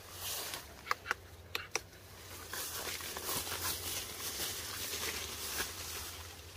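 Leaves and branches of durian trees rustling as they are pushed aside and handled, with a few sharp clicks or snaps about a second in.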